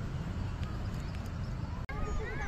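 Outdoor ambience dominated by a steady low rumble, with a few faint ticks. The sound drops out abruptly for a moment near the end.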